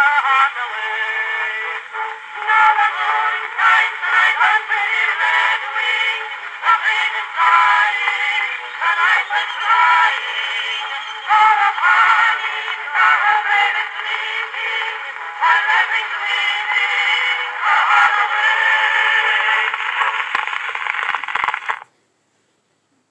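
Edison Home cylinder phonograph playing an old acoustic recording of a sung song with band accompaniment through its horn, thin and tinny with no bass. The last sung words finish about half a second in, the accompaniment plays on, and the sound cuts off abruptly near the end.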